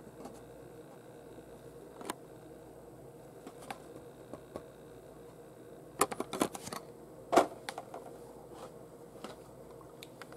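Plastic blister pack of a carded die-cast toy car being handled: a few faint scattered clicks, then about six seconds in a quick run of louder plastic clicks and crinkles as the card is moved and put down.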